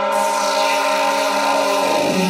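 Darkstep drum and bass in a breakdown: droning synth tones with the bass and drums dropped out. A hiss of noise swells in just after the start, building toward the next drop.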